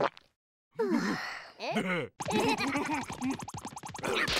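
Cartoon larva characters' wordless voices: gliding exclamations after a brief pause, then a rapid fluttering chatter.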